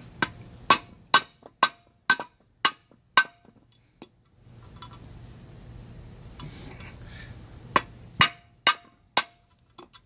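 Hammer tapping a steel spring retainer into place on a new air-brake shoe: seven sharp metal-on-metal strikes about two a second, a pause, then four more near the end, some leaving a short ring.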